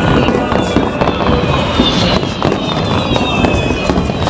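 Aerial fireworks display: shells bursting in a dense, continuous run of bangs.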